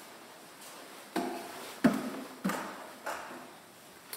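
Footsteps of bare feet climbing short wooden steps: four knocks about half a second apart, the second the loudest.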